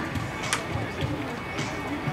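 Music from a ballpark's public-address speakers, faint under the murmur of voices on the field, with one sharp clap about half a second in.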